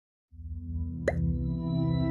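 Logo-intro music: a low sustained chord comes in a moment after silence, and a short rising plop sound effect sounds about a second in.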